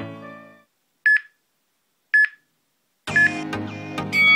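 Background music fades out, then two short electronic beeps about a second apart. A third beep comes as music starts again near the end. This is a workout interval timer counting down the last seconds of a rest period to the start of the next round.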